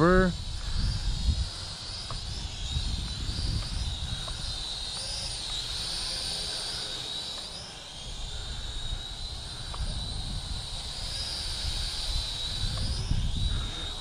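ScharkSpark SS40 Wasp toy quadcopter's propellers whining high, the pitch wavering up and down as the small drone is flown and corrects against gusts. Wind rumbles on the microphone underneath.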